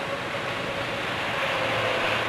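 Steady background street noise with a faint hum running under it, with no distinct event standing out.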